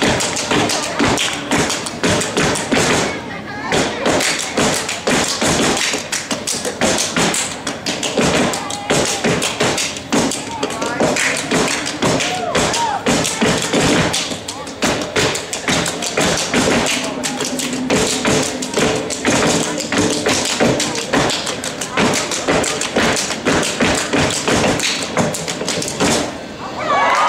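Step team stepping: rapid, rhythmic foot stomps, hand claps and body slaps running without a break, with voices shouting over the beat.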